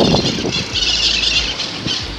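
Wind and rolling noise from riding a bicycle along a street, with a steady high-pitched sound coming in about a third of the way through.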